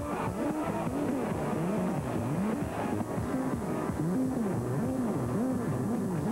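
Instrumental passage of band music, with a low tone swooping up and down over and over, about one swoop every two-thirds of a second.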